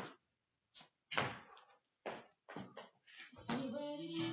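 A series of irregular thuds as hands and feet land on a floor mat during a fast jump-and-push-up exercise. Music comes in near the end.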